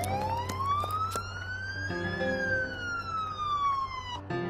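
Siren sound effect: one slow wail that rises for about two seconds and then falls, over background music.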